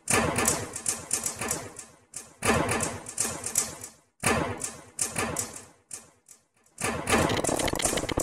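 Experimental noise recording: bursts of dense, rapid clattering, each starting sharply and dying away over a second or two, with scattered small clicks between and a longer, more even stretch near the end.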